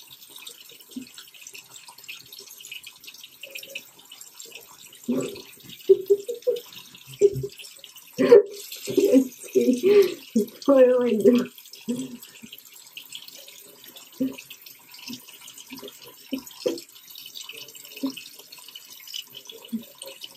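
Bathroom faucet running steadily, its stream splashing into the sink basin. A few seconds in there is a stretch of loud, short vocal bursts, which die back down around the middle.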